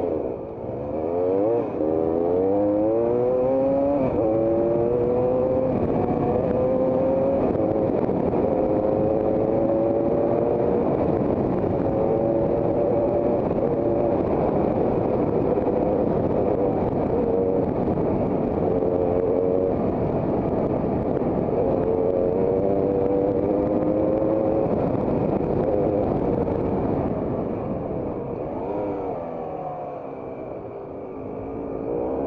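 Trail motorcycle engine heard from the rider's helmet camera. Over the first few seconds it accelerates up through the gears, its pitch rising and dropping back at each change, then it holds a steady cruise over a low rumble. It eases off and gets quieter near the end.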